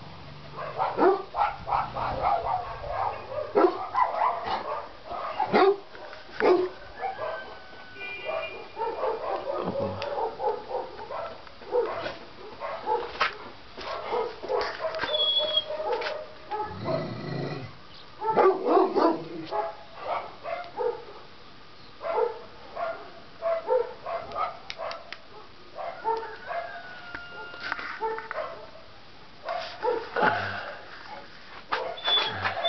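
A dog barking and yelping in irregular bouts of short, loud calls.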